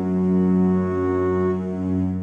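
Outro music: a long held low chord.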